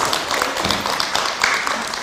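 Studio audience, children among them, applauding steadily.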